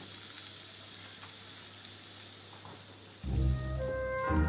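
Symphony orchestra in a soft passage: a faint, high, hissing shimmer over a low hum, then about three seconds in a loud, sustained low chord from the low brass and strings comes in suddenly.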